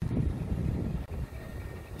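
Wind buffeting the microphone: a low, uneven rumble, louder in the first second.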